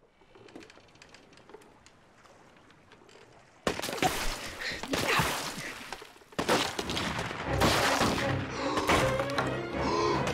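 Television drama soundtrack: faint at first, then from about four seconds in a sudden loud stretch of music and sound effects, broken by a short drop about six seconds in before it comes back.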